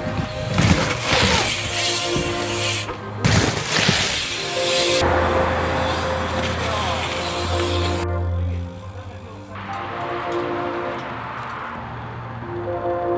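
Background music with steady held chords, broken by loud bursts of rushing noise about half a second in and about three seconds in, and a longer noisy stretch in the middle.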